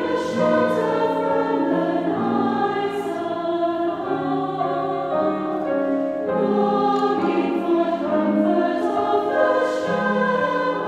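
Salvation Army songster brigade, a mixed choir of men's and women's voices, singing a hymn arrangement in parts. The notes are held and move from chord to chord.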